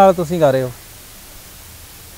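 A man's voice finishing a spoken phrase, then about a second of pause with only a steady background hiss.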